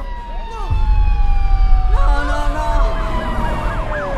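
Emergency vehicle sirens wailing, their pitch sliding slowly downward as they pass. A deep low rumble cuts in abruptly under them less than a second in.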